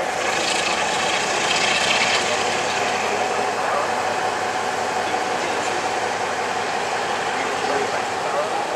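Class 47 diesel locomotive's Sulzer V12 engine working steadily as the train pulls away, with the coaches rolling past close by.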